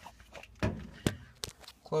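Three light knocks and clicks from handling at a top-loading washing machine, about half a second apart.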